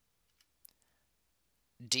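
Near silence with a couple of faint clicks about half a second in, then a narrating voice begins near the end.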